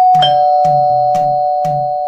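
Two-tone ding-dong doorbell chime: a higher note, then a lower one a moment later, both held and ringing together over music with a steady beat.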